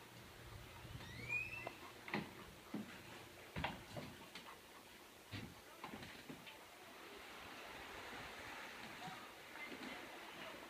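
Scattered sharp knocks and clunks of a person and a Great Dane moving about in a small boat moored at a dock, with a short rising squeak about a second in.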